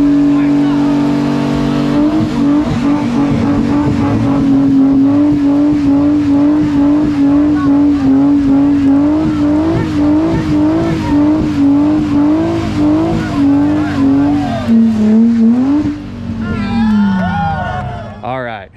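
Nissan 350Z's swapped VQ35HR V6 held at high revs through a burnout, with the rear tyres spinning. The engine note is steady at first, then wavers up and down rhythmically, dips briefly, and falls away near the end.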